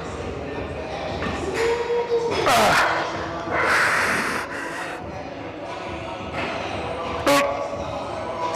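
A man straining and breathing hard through a slow, heavy incline dumbbell press. There is a groan that falls in pitch about two seconds in, a forceful hissing exhale around the middle, and a short sharp click near the end.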